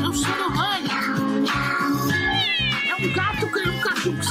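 Domestic cat meowing over background music with a steady beat: short meows in the first second, then a longer meow that falls in pitch from about two seconds in.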